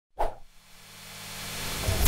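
Intro sound effect: a short pop, then a whoosh that swells steadily louder, leading into the opening transition.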